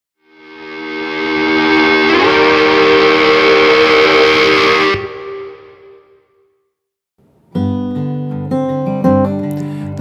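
A short, loud burst of distorted guitar-like music swells in, shifts chord about two seconds in, and cuts off halfway through with a short fade. After a brief silence, an acoustic guitar starts strumming chords.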